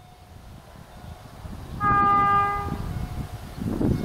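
A train horn sounding one blast about a second long from a train not yet in sight, over a low rumble that swells near the end.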